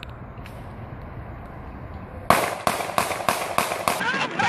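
A rapid string of about seven handgun shots in under two seconds, a police officer firing into a stopped car, recorded by a police car's dashcam microphone. It follows a couple of seconds of low rumble.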